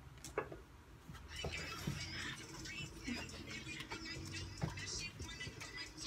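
Faint music leaking from earbuds, with a person whispering a short phrase over it.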